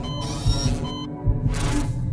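Electronic documentary background music with a low pulsing beat and a few thumps, high steady electronic tones in the first second, and a short burst of hiss near the end.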